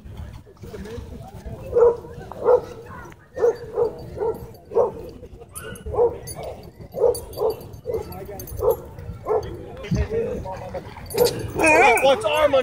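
A dog barking in a steady series, about a dozen barks roughly half a second apart, then near the end a louder, higher, wavering whining cry as dogs tussle.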